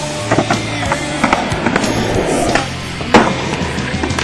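Skateboard clacks and landing impacts, several sharp knocks with the loudest about three seconds in, over a rock song.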